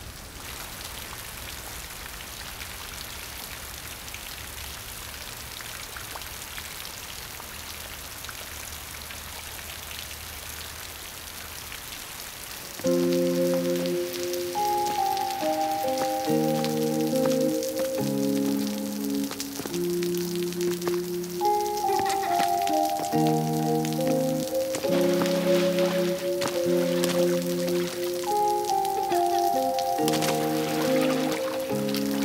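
Steady rain falling onto a puddle and wet ground. About 13 seconds in, calm instrumental music with a slow melody of held notes and chords comes in over the rain and is the loudest sound from then on.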